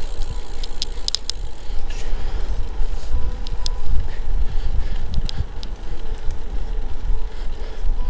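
Wind buffeting the camera microphone and tyre noise from a road bicycle rolling along a paved lane, a steady low rumble, with a few sharp clicks about a second in.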